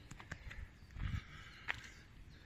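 Footsteps of a hiker walking on a trail of dry fallen leaves, with leaf crunching, a heavier footfall about a second in and a sharp crackle near the end.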